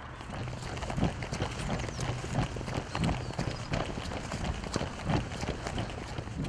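Footsteps of a person hurrying across grass, steady thuds about twice a second over a constant rustling hiss.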